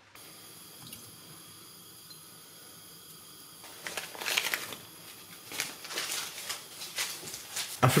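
Water with chopped lard and butter heating in a saucepan: faint at first, then from about four seconds in, irregular bubbling and crackling as the fat melts into the hot water.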